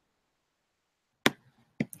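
Computer mouse clicks: one sharp click about a second and a quarter in, then two quick clicks near the end, after a stretch of near silence.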